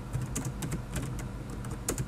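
Computer keyboard typing: an uneven run of about a dozen key clicks, the sharpest just before the end.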